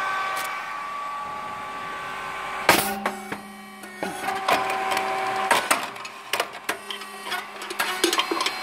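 Puffed rice cake machine running: a steady mechanical hum, with one loud short burst nearly three seconds in and a string of sharp clicks and knocks after it.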